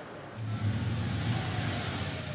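A car engine running, with road noise from a car moving along the street, starting about a third of a second in and holding steady.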